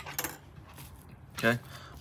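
A few light metallic clicks and clinks of kitchen knives being picked up and handled over a wooden cutting board, mostly in the first second.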